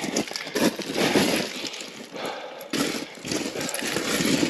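Hiking boots crunching and sliding on loose rock scree while stepping down a steep slope, in irregular steps with one sharper crunch near three seconds in.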